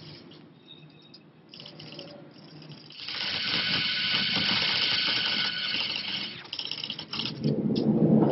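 Typewriter being typed on: after a quiet start, a rapid, dense clatter of keystrokes runs for about three and a half seconds, then a few more scattered strokes. Near the end there is a heavier, lower sound.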